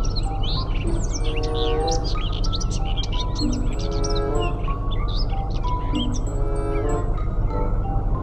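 Steady low diesel rumble of a Caterpillar mining haul truck and a hydraulic mining shovel loading it, under background music with many short bird-like chirps.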